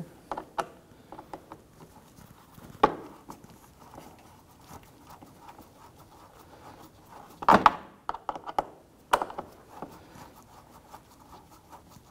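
Phillips screwdriver turning a screw into the plastic fog light bezel in a car's bumper: soft ticks and scrapes of tool and plastic, with a sharp knock about three seconds in, a cluster of knocks a little past halfway and another shortly after.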